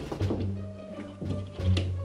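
A hand tapping and scratching on a wall a few times in short knocks, imitating the sound of mice scratching and running inside the wall, with background music playing underneath.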